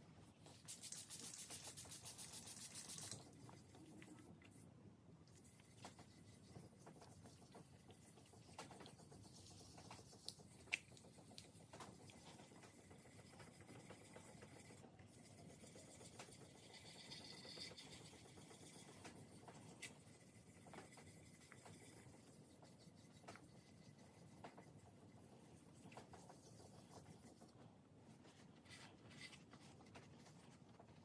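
Faint rubbing of a small piece of 2000-grit sandpaper worked by hand over a guitar body's clear coat (color sanding before polishing). It opens with a quick run of rapid back-and-forth strokes for about two seconds, then goes on as softer scrubbing with a few sharp ticks.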